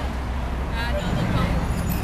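City street traffic: a steady low rumble of passing vehicles, with a voice rising briefly over it about a second in.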